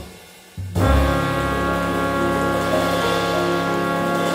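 Jazz ballad: the music breaks off for a moment, then comes back in about a second in with a long held chord on horns over a low bass note.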